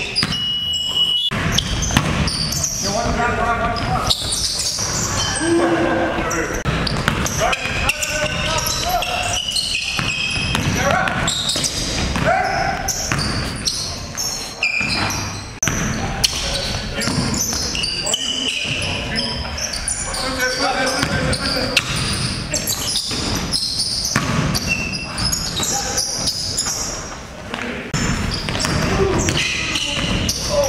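A basketball game on a hardwood gym floor: the ball bounces with repeated thuds while players call out to each other, all echoing in the large hall.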